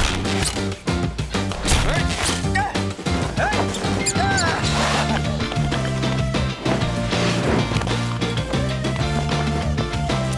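Animated-film soundtrack: a lively music score with several sharp crash and whack sound effects in the first two or three seconds.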